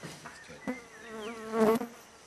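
A person's voice held on a long, slightly wavering drone, as in a drawn-out hesitating "uhh". It comes in briefly, then again louder near the end.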